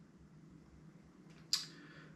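Quiet room tone, then about one and a half seconds in a short, sharp in-breath hiss that fades quickly.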